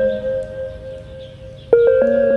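Background music of soft, bell-like held notes that slowly fade, then a new chord is struck near the end.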